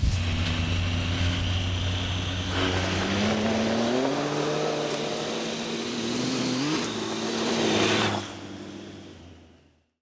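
Off-road motorcycle engine revving as it rides, its pitch climbing a few seconds in and jumping again briefly later. The sound drops away about eight seconds in and fades out.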